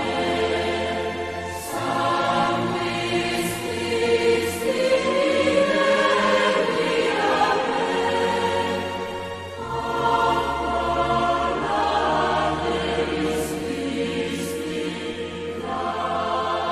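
A choir singing a slow hymn in long, sustained phrases over steady low bass notes that shift with the chords.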